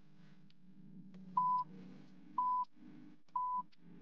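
Quiz countdown timer beeping: three short electronic beeps of one steady pitch, about a second apart, as the count runs down towards zero. A faint low hum sits underneath.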